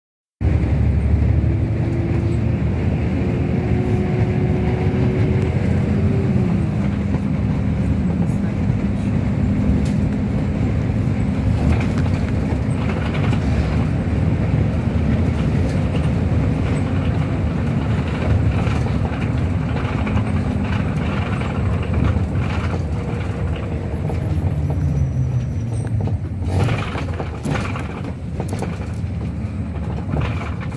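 Inside a moving city bus: steady drone of the drivetrain and tyre noise on the road, with a motor tone that slides in pitch about six seconds in. A few sharp rattles come near the end.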